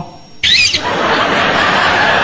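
Audience breaking into laughter about half a second in, starting with a high-pitched shriek and spreading into a steady wash of laughter and chatter from many people.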